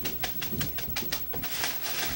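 A utensil stirring a wet tuna mixture in a mixing bowl, with quick irregular clicks and taps against the bowl, several a second.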